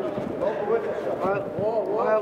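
Raised men's voices calling out, with a couple of dull thuds.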